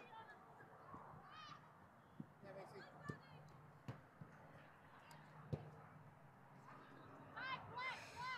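Faint, distant shouts of voices across an outdoor soccer field: a short high call about a second and a half in and another near the end, with a few faint sharp knocks in between.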